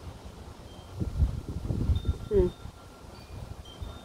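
Wind buffeting the microphone in gusts: a low rumble starting about a second in and dying away after a second and a half. A few faint high ringing tones sound through it.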